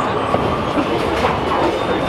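Bowling-alley din: a steady rumble of bowling balls rolling down the lanes, with scattered knocks and clatters of balls and pins. A steady high tone fades out about halfway.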